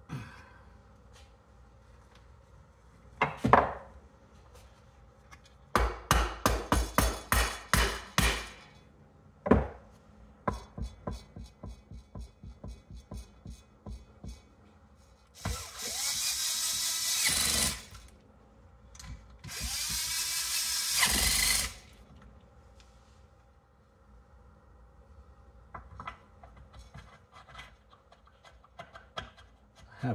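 Cordless drill-driver running in two steady bursts of about two seconds each, a couple of seconds apart, driving in the sump cover bolts on a Briggs & Stratton vertical-shaft engine. Before them come a sharp knock and a run of quick, evenly spaced knocks and lighter ticks.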